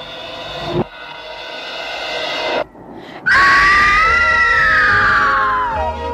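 Suspense music swells in a steady crescendo and breaks off; after a brief gap a woman gives a long, loud, high scream whose pitch slides steadily downward.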